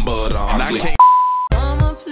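Music with a voice that breaks off about a second in for a loud, steady electronic beep at a single pitch, lasting about half a second. A different song starts abruptly right after it.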